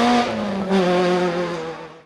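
Rally car engine running at high revs as the car drives away on a gravel stage. The revs dip briefly and pick up again about two-thirds of a second in, then the sound fades out at the end.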